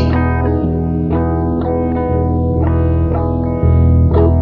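Music: an instrumental passage of an indie pop song with no singing. A chorus-effected electric guitar picks notes about every half second over a steady bass, and the music gets louder near the end.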